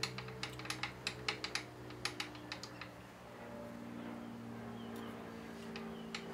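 Quick, irregular light metallic clicks and taps from hands working a milling vise and its hold-down bolts, thinning out after about two and a half seconds, over a steady low hum.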